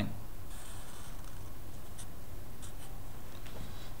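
A marker drawing on paper: faint scratchy strokes as a line and arrowheads are drawn, over a steady low hum.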